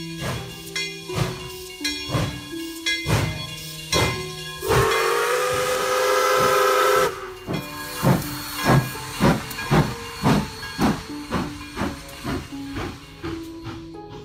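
Steam-train sound effect: a steady run of chuffs with hiss, and a long steam-whistle blast of several pitches about five seconds in that lasts over two seconds.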